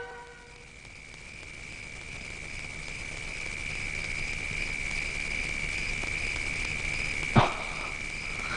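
Steady, high-pitched insect trill of crickets, a night ambience, slowly growing louder, with one short knock near the end.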